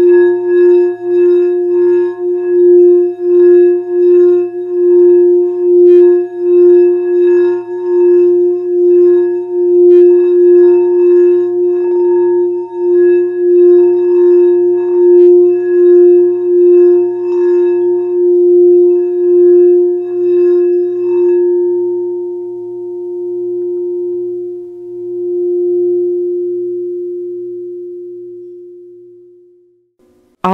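Singing bowl played in a sound healing session, rubbed around its rim to hold one steady ringing tone with a regular wobble in loudness. About twenty seconds in the rubbing stops and the tone rings on and slowly fades away.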